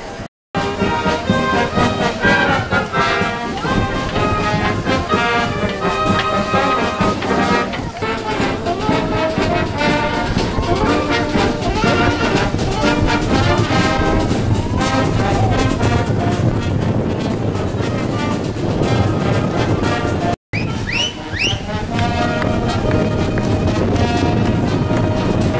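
Wind band playing, with trombones and trumpets to the fore. The sound cuts out briefly twice, about half a second in and again about twenty seconds in.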